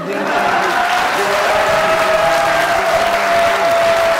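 Studio audience applauding, with a long held note running through the clapping.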